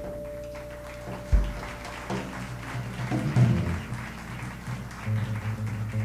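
Live jazz quartet playing: a held electric guitar note fades out over the first two seconds while the double bass plucks low notes and the drummer plays cymbals and drums underneath.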